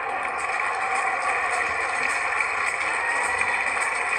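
Steady rushing noise from a television's speaker playing a tennis match broadcast, with no speech.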